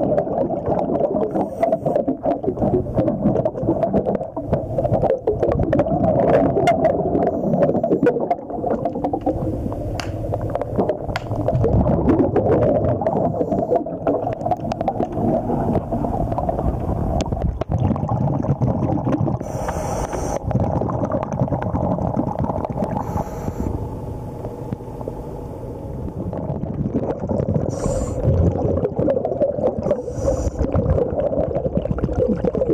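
Underwater noise picked up through a camera housing as a diver works along a boat hull: a continuous rumbling, gurgling wash of bubbles and movement against the hull. A few short hisses stand out in the second half.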